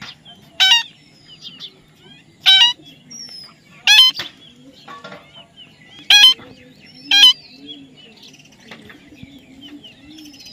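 Parakeets giving five loud, short, harsh calls at irregular intervals of one to two seconds, over fainter chirps and chatter from the flock.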